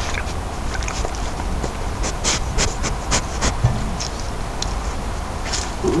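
Young badger sniffing and snuffling right at the trail camera's microphone, with a quick run of short sniffs about two seconds in, over the camera's steady low hum.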